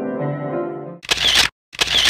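Grand piano playing, cut off about a second in by two short, sharp noise bursts, each about half a second long and louder than the piano.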